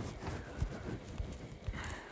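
A few soft, irregular knocks and thumps from fingers tapping and handling a touchscreen device while working in a drawing app.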